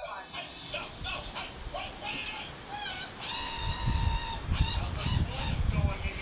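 High-pitched animal calls in the background: a few short calls, then one long held call about three seconds in. Low thumps from handling close to the microphone fill the second half.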